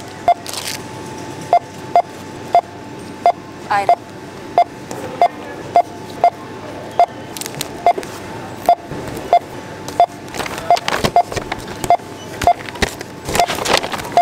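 Checkout barcode scanner beeping as items are passed over it: short beeps of one pitch, repeated every half second to a second, with the rustle and clatter of packaging being handled.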